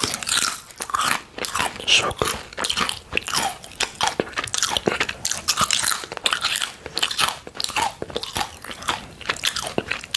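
A thin, crisp fried plantain chip being bitten and chewed, a dense run of sharp crunches and crackles.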